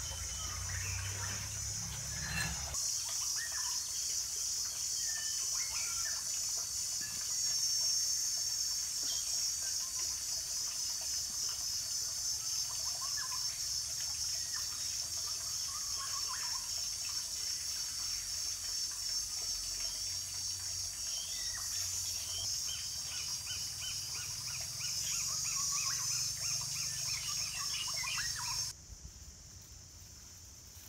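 Outdoor forest ambience: a steady high-pitched insect drone with scattered bird chirps over it, after a low rumble in the first few seconds. It cuts off suddenly near the end.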